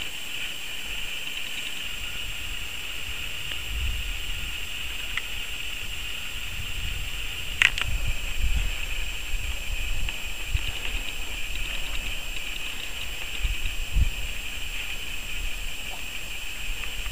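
Wind and movement rumbling on the microphone of a camera carried down a snow slope on skis, uneven and gusty, over a steady high hiss. A single sharp click about seven and a half seconds in.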